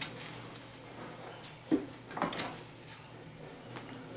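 Rhodesian Ridgeback puppies scuffling and play-fighting on blankets, paws and bodies scrabbling, with two brief louder noises near the middle.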